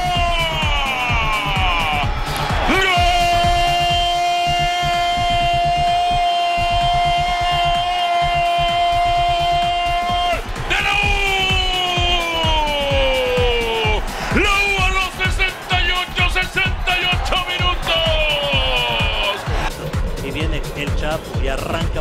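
Football commentator's long drawn-out goal call, "gol" held for several seconds at a time in a few long breaths, each stretch falling in pitch at its end, with a wavering stretch near the end. Under it runs background music with a steady beat.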